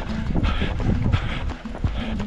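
Running footsteps slapping on a wet tarmac lane in a steady rhythm, with wind and handling rumble on the handheld camera's microphone as it bounces along with the runner.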